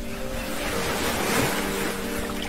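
Water poured from a small metal bowl into a large metal basin, a steady splashing rush that swells a little near the middle. The pouring is done to guide a blind camel to the water by its sound.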